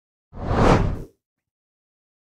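Whoosh sound effect marking a news-bulletin story transition: a single swell, under a second long, that builds and fades away.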